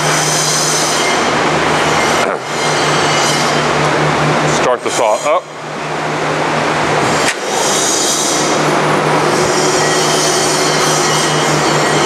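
Horizontal band saw running without cutting: a steady, loud motor hum and blade hiss, dipping briefly a few times. A short voice sounds about five seconds in.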